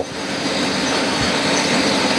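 A steady mechanical noise with a low hum running under it, growing slightly louder.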